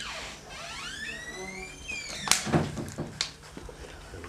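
Several high-pitched squeaks that glide up and down in pitch, then a sharp knock a little over two seconds in.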